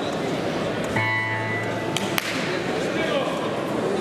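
Steady crowd chatter in a large sports hall. About a second in, an electronic buzzer sounds once for just over a second, ending with a sharp click.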